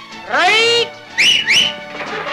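A man's drawn-out call that rises in pitch and holds. About a second in come two quick high whistles, each rising and then holding.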